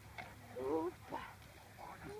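Indistinct voices, loudest a little after half a second in.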